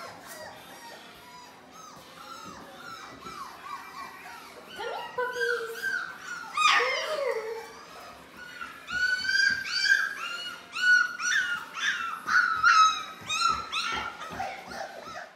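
Four-week-old Labrador puppies whimpering in many short, high-pitched cries, a few sparse at first, then coming thick and fast in the last five seconds.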